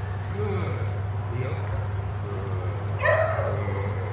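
A dog barks once, loud and short, about three seconds in, over a steady low hum.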